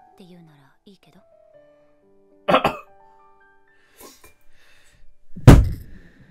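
Soft anime dialogue under two loud, sudden bursts close to the microphone: a short cough-like burst about two and a half seconds in, and the loudest, a deep thump, about five and a half seconds in.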